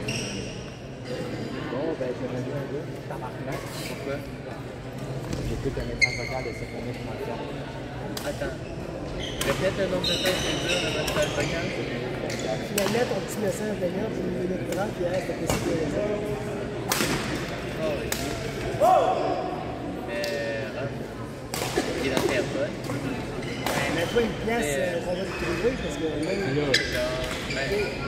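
Badminton rackets hitting shuttlecocks in irregular sharp knocks, with short sneaker squeaks on the court floor, in a large echoing gym hall with players' voices in the background.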